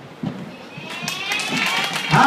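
The music has stopped: sneakers step and tap on a wooden dance floor, and audience voices rise in the second half.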